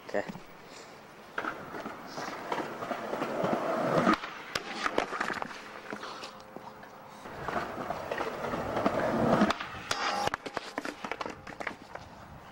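Skateboard wheels rolling on wet pavement, getting louder, then a sharp clack of the board about four seconds in as the rider attempts a backside lipslide down a handrail. He bails and slams onto the wet ground, with more board clatter and voices after.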